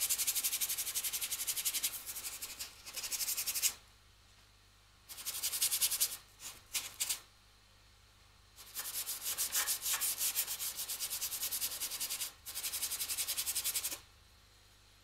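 Paintbrush scrubbing black oil paint onto a painting board in many quick back-and-forth strokes, a dry scratchy rasp. It comes in bouts of a few seconds with short pauses between them, one of them while the brush is reloaded.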